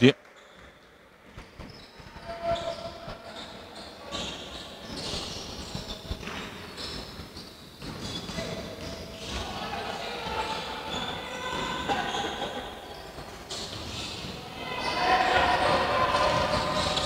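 A basketball dribbled and bouncing on a wooden parquet court, repeated short knocks, with players' voices calling out in the hall.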